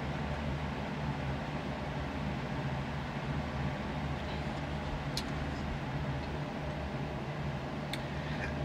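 Steady low mechanical hum of room background noise, with a faint click about five seconds in.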